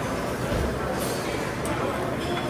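Indistinct background voices and steady room noise of a busy buffet dining hall.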